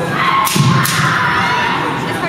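Kendo sounds in a gymnasium: two sharp impacts about a third of a second apart, about half a second in, under a drawn-out shout that lasts about a second. Hall chatter echoes behind them.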